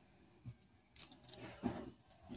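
Faint handling sounds from a thin metal rod being turned over in the hands. There is a soft knock about half a second in, then a sharp metallic click about a second in, followed by a few lighter clinks.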